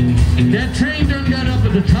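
Live country band playing: a male singer's wavering vocal line over guitar and drums, with steady low bass notes underneath.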